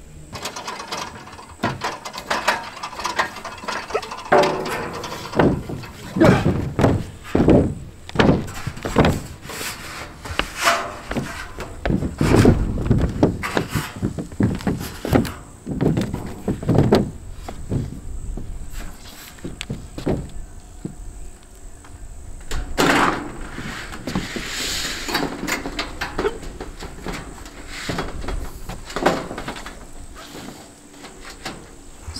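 Corrugated metal roofing panel being handled on a roof: irregular knocks, thumps and flexing rattles as the sheet is carried and set down on wooden battens, with a couple of longer, noisier scraping sounds about three-quarters of the way through.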